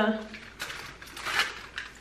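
Cardboard chocolate box and its foil wrapper being handled, giving a few short, soft rustles.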